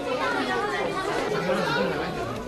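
Background chatter: several voices talking at once, overlapping.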